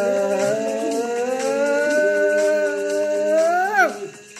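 A woman's voice holding long notes over music with a steady low drone; near the end the pitch swoops up and then breaks off.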